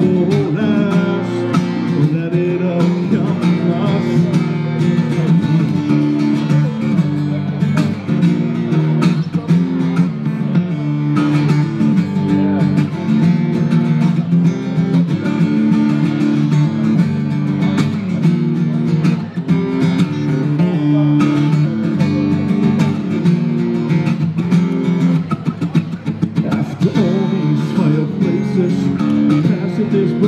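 Acoustic guitar strummed steadily in chords: an instrumental passage of a song between sung verses.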